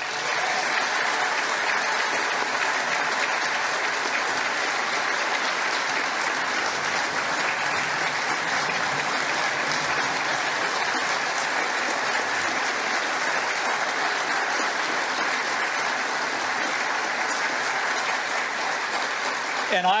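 Audience applauding, a steady, even clapping that holds at one level and stops near the end as speech resumes.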